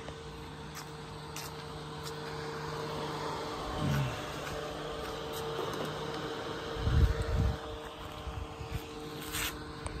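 DeWalt DCE512B 20V brushless battery fan running steadily at its highest setting: a constant hum with rushing air. About seven seconds in, a brief low rumbling thump is the loudest sound.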